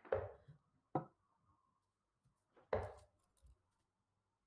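Three steel-tip darts thudding into a Target Pro Tour bristle dartboard. The first two land about a second apart and the third nearly two seconds later.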